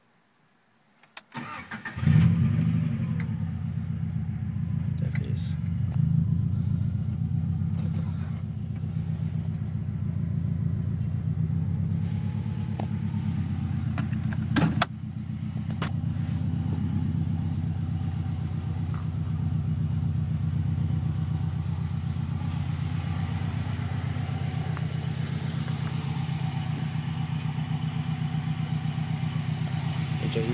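1992 Subaru Impreza WRX's turbocharged flat-four starting on the starter: a few clicks, then it catches about two seconds in and settles into a steady idle through an A'PEXi GT Spec aftermarket exhaust. There is a sharp knock about halfway through, after which the idle is a little quieter.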